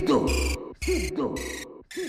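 The outro of a Kannada DJ remix: one short electronic phrase with a dipping-and-rising tone over a bass note, repeated about once a second and fading out.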